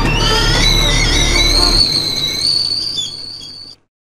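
Experimental film soundtrack of music and sound effects: several high, whistle-like tones waver over a low drone. The drone drops out about halfway through, and the high tones fade and then cut off just before the end.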